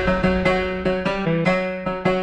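Background music: a piano-like keyboard playing a quick run of single struck notes, each fading after it sounds.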